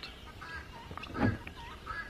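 Poultry calling in the background: a few short, faint calls, with one brief low sound a little past the middle.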